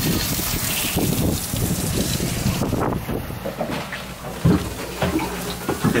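Water poured from above splashing over a sailboat's steering wheel and pedestal and running onto the cockpit floor, a water test for leaks down the pedestal shaft. The splashing eases about halfway through, and a thump follows.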